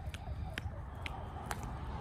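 A jump rope slapping the exercise mat once per turn, giving sharp, regular ticks about twice a second as she skips with scissor-step footwork.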